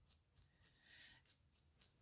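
Near silence, with a faint soft scratching about a second in from a felting needle pushing into black wool roving.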